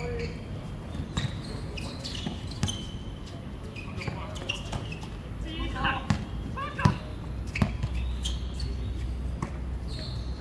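Basketball bouncing on an outdoor hard court during a pickup game: irregular sharp thuds of the ball, with players' voices calling out between them.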